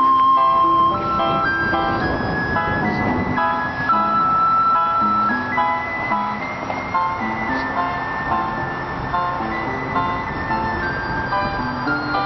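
Small toy electronic keyboard playing a slow, mellow melody of held and short notes over a repeating lower note pattern, in thin, simple electronic tones. A brief noise passes about three seconds in.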